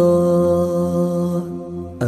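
Male voice singing a Kashmiri naat, holding one long steady note at the end of a line and fading near the end, over a low steady drone.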